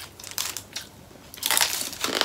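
Crispy roast pork belly skin (lechon crackling) crunching as it is bitten and chewed close to the microphone, growing into dense crunching from about a second and a half in.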